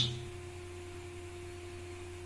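Steady background hum in the recording, with a faint steady tone over it. The last of a spoken word trails off at the very start.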